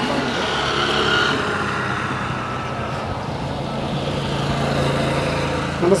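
Steady low hum of an engine or motor running, even in level.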